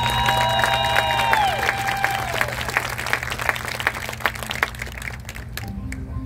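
Marching band holding a chord that bends down in pitch and cuts off about a second and a half in, while the crowd applauds; the applause thins out toward the end.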